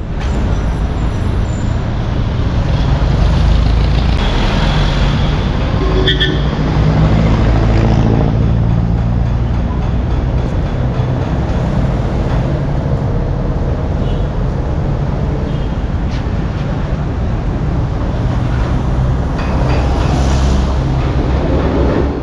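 Steady, loud street traffic: the engines of passing jeepneys, motorcycles and cars, with a brief high squeal about six seconds in.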